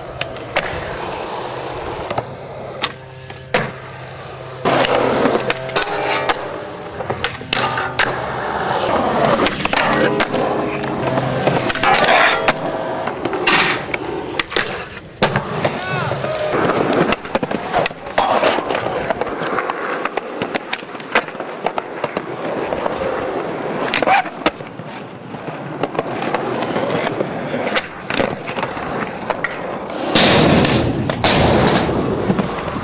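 Skateboard wheels rolling on concrete, broken by many sharp clacks and smacks of the board being popped and landed.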